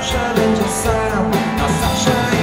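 Live rock band playing: electric guitars and drums with a male lead vocal.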